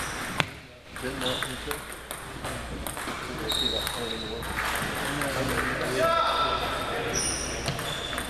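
Table tennis rally: the celluloid-type plastic ball clicks off rubber paddles and the table top, the sharpest crack about half a second in, with more ball clicks from neighbouring tables. A hall full of players' voices sits under it, with brief high squeals here and there.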